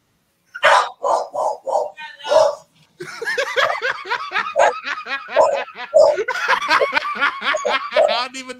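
Men laughing hard, first in short repeated bursts, then in continuous overlapping laughter from about three seconds in.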